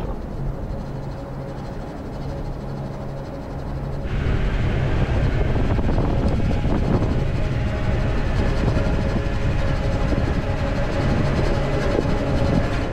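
Off-road 4x4 driving over a desert track, a steady engine and road noise heard from inside the cabin, which comes in suddenly and louder about four seconds in. Before that, a quieter steady low hum.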